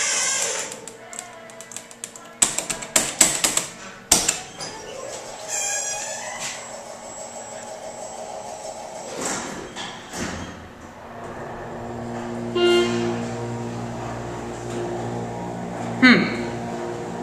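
Schindler hydraulic service elevator: a burst of clicks and knocks as the door works, then about three quarters of the way through the hydraulic pump motor starts with a steady low hum as the car sets off upward. A short pitched tone sounds just after the hum begins.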